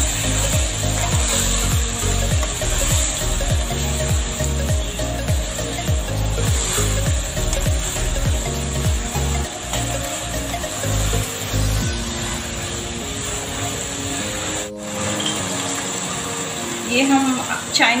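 Spatula stirring and scraping vegetables in a hot frying pan with a sizzle, in repeated strokes that stop about two-thirds of the way through.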